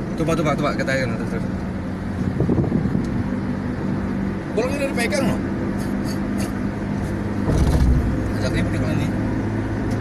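Engine and road noise heard from inside the cabin of a vehicle driving on a highway. The engine hum is steady, then drops deeper and grows louder about seven and a half seconds in.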